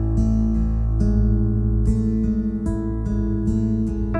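Soft instrumental worship music from a live band: a guitar strummed about twice a second over sustained keyboard chords, the chords changing a couple of times.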